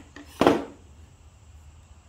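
A pine board knocking once as it is flipped over and set down against another board, about half a second in, with a lighter click just before.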